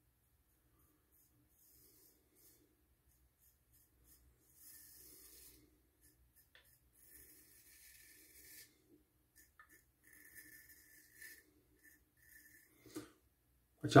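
Straight razor shaving stubble through lather: a handful of faint, short scraping rasps, beginning about four seconds in after near silence.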